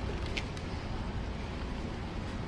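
Steady low rumble of theatre auditorium room noise on an audience recording, with a faint brief high tick about half a second in.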